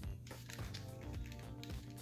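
Quiet background music with steady held tones.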